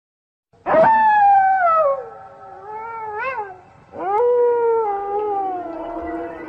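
Two long wolf howls. The first starts high and slides down in pitch, wavering briefly before it fades. The second rises and then falls slowly.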